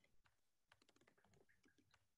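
Near silence, with faint, irregular clicks of typing on a computer keyboard starting within the first second.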